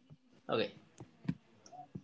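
Computer mouse clicking: about three sharp single clicks in the second half.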